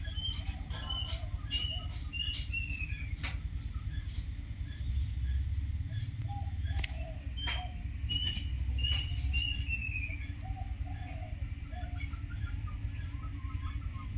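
A run of four or five short, high chirps ending in a longer falling note, heard twice: near the start and again about halfway through. Under it runs a steady, thin high drone and a low rumble.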